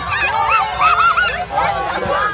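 A crowd of young children cheering and shrieking, many high voices overlapping at once in rising and falling yells.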